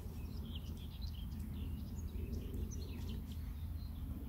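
Outdoor ambience: small birds chirping in short, scattered calls over a steady low rumble.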